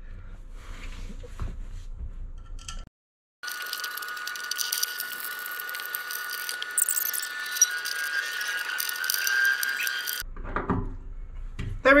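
Faint clicks of screws and a metal plate being handled, then after an abrupt cut a high-pitched, sped-up stretch of work sounds: a steady whine with chattering above it, with no bass. It fits a fast-motion run of fastening the aluminium inspection plate and fuel sender onto the tank.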